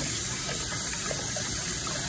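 Kitchen faucet running in a steady, even rush of water.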